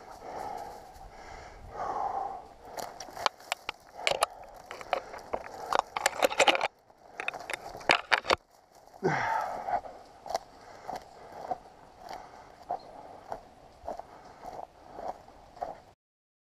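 Dry twigs and brush scraping and crackling against a person moving through scrub undergrowth, with many irregular sharp snaps and clicks. About nine seconds in there is a short vocal sound that falls in pitch.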